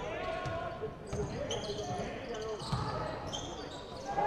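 Live basketball court sound: a ball bouncing on the hardwood, a few short high-pitched sneaker squeaks and faint voices of players echoing in the hall.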